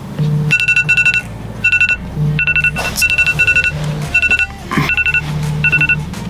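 Smartphone alarm ringing with bursts of rapid electronic beeps, several a second, in groups separated by short pauses: an early-morning wake-up alarm.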